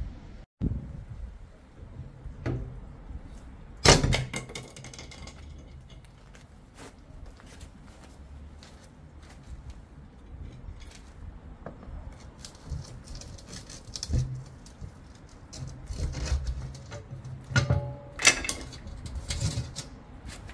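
Steel manhole cover being worked loose and lifted with lifting keys: scattered metal clinks and knocks, one loud clank about four seconds in, and a run of heavier clanks near the end as the cover comes up.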